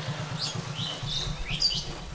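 Birds chirping: about half a dozen short, quick chirps over a low, steady hum.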